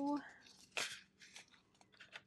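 Small plastic diamond-drill bags rustling and crinkling as they are handled, with a few short, sharp crackles, the strongest a little under a second in.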